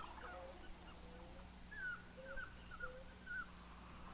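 Faint, scattered short chirps of forest birds, several in quick succession in the second half, over a steady low hum.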